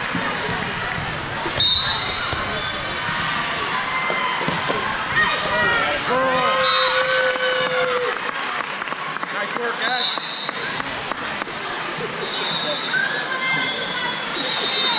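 Volleyballs being struck and bouncing on a hardwood court in a large, echoing hall, with sharp hits scattered throughout over a steady babble of players' and spectators' voices and calls.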